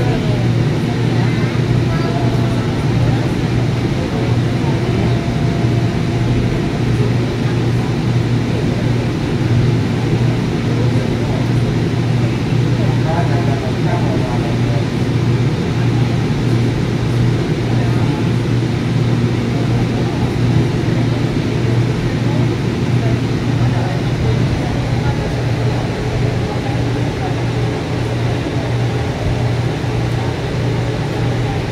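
Interior of a light-rail car in motion: a steady low hum and rolling rumble from the train running along the track, with faint passenger voices underneath.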